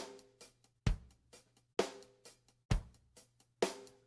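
A sampled drum-kit loop played back from a Roland SP-404MKII sampler: kick and snare hits just under a second apart, with faint hits between them. The sample was pitched up seven semitones, resampled, and is now played back down seven semitones, which trims some of its high end for a fuller sound.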